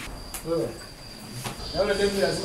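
Short bits of a man's voice talking, over a steady high-pitched whine that starts abruptly.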